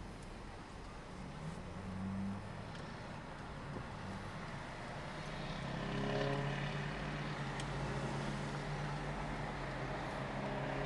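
2008 Hyundai Accent's 1.6-litre four-cylinder engine running as the car drives off, heard from inside the cabin. Its steady hum grows louder about six seconds in.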